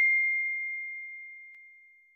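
A bell-like 'ding' sound effect for the notification bell of an animated subscribe button, a single clear high tone ringing out and fading away to nothing, with a faint tick about one and a half seconds in.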